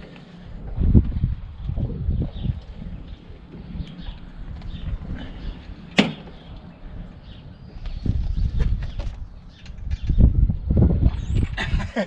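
Liftmaster 3-ton steel floor jack being pumped to raise a car: irregular low thumps from the handle strokes under load, and one sharp click about halfway through.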